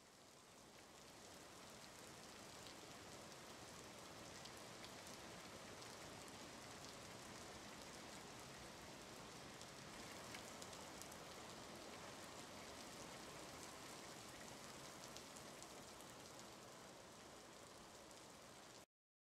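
Faint, steady rain-like hiss with fine crackles through it, fading in over the first two seconds.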